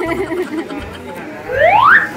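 A cartoon-style rising whistle sound effect, one smooth upward slide about one and a half seconds in and the loudest sound, after indistinct voices.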